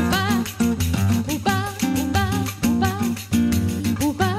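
Live samba played by a small acoustic trio: a woman sings a melody with vibrato, over plucked acoustic guitar and small hand percussion keeping a quick, even beat.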